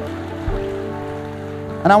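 Soft live band music of held chords, shifting to a new chord about half a second in; a man's voice begins speaking near the end.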